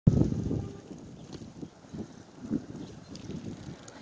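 Wind buffeting the microphone as a low, uneven rumble, strongest in the first half-second and then settling into lower gusts.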